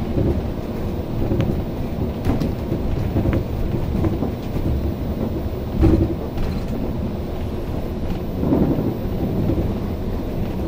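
A MAN double-decker bus with a six-cylinder MAN D2066 diesel engine on the move, heard inside the cabin: a steady low rumble with body rattles and knocks throughout, the loudest knock a little before the middle.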